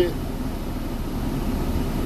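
Steady low rumble of a vehicle's engine and road noise inside the cab.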